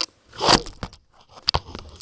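Crackling and clicking of a layered handmade paper card with paper flowers being handled, then set down on a cutting mat with a sharp knock about one and a half seconds in.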